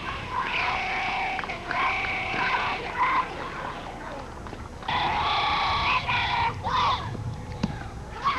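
High children's voices calling out in long, drawn-out cheers, several overlapping, in pitched segments of about half a second to a second.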